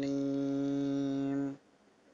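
A man's voice in melodic Quranic recitation, holding one long vowel on a steady pitch that stops about one and a half seconds in; then silence.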